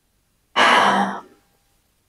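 A woman sighing once, a breathy exhale of under a second starting about half a second in.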